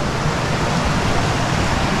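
Mountain stream rushing steadily over rocks, an even wash of water noise.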